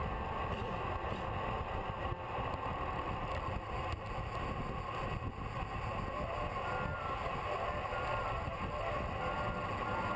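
Wind buffeting a bike-mounted camera's microphone while riding at speed in a group, a steady low rumble.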